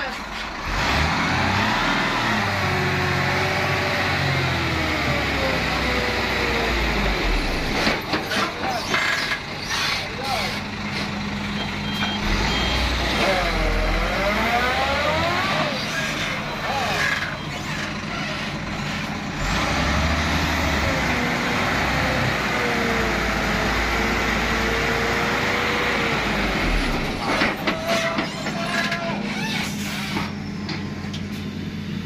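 Hino FM 280 JD dump truck's diesel engine revving hard under load in surges, its pitch rising and falling, as the truck strains to pull its wheels out of deep mud ruts.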